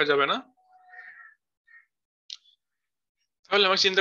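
A voice speaks briefly, then a faint short sound about a second in and a single click a little past the middle, with quiet after until speech resumes near the end.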